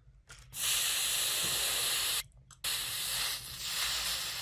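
Hot steam iron hissing as a tongue touches its soleplate, in two long stretches split by a short break a little after two seconds in.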